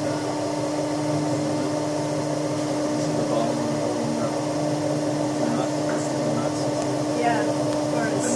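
Steady hum of a Tinius Olsen universal testing machine's drive as it holds a steel coupon under tension, with one clear constant tone.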